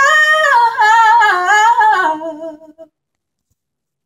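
A woman's unaccompanied voice singing a wordless closing run that steps down in pitch, with a wavering vibrato, and fades out about three seconds in.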